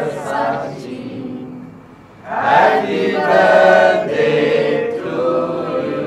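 A group of voices singing a birthday song together. The singing fades to a short pause about two seconds in, then the next line starts.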